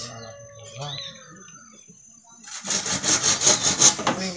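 Hand saw cutting through bamboo in quick, even strokes, starting loud about two and a half seconds in.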